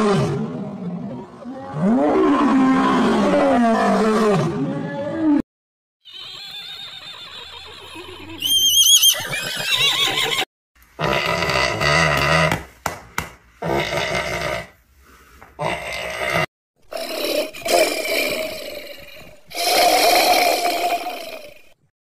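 A run of separate animal calls cut one after another with brief silences between them. It opens with about five seconds of a lion's deep, rising and falling roaring calls. A pig's grunts come around the middle.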